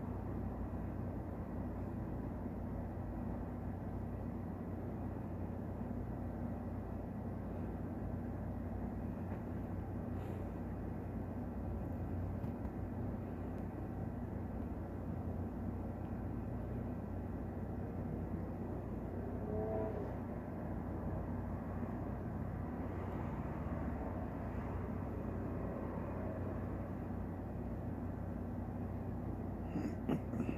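Steady low mechanical hum with a few faint steady tones above it, and a brief faint pitched sound about two-thirds of the way through.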